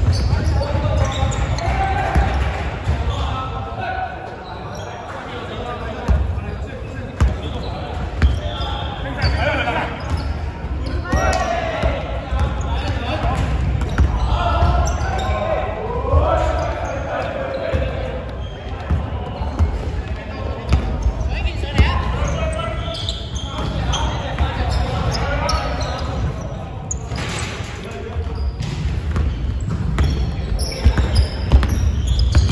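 A basketball bouncing on a hardwood gym floor during play, with sharp thuds at intervals. Players' voices echo in a large indoor sports hall.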